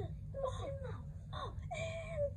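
A child's high voice making short wordless vocal sounds whose pitch slides downward, then a longer, held one near the end.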